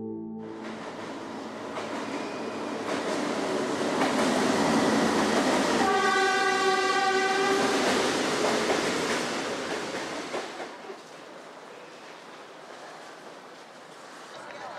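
Passenger train pulling into a station, its running noise building up, with one long horn blast about six seconds in. The train noise dies down after about ten seconds, leaving quieter platform sound.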